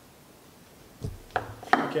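Small test-kit items being set down on a hard tabletop: a dull knock about halfway through, then two sharp clicks close together near the end.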